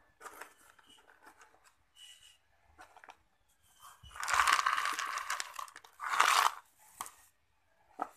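Handling noise from a small plastic pot filled with decorative pebbles: soft crackles and clicks as the stones are pressed and shifted, then two loud crunching, rustling stretches about four seconds in and just after six seconds in.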